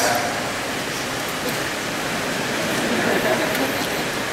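Steady, even hiss of room noise in a large hall, with no distinct sound standing out.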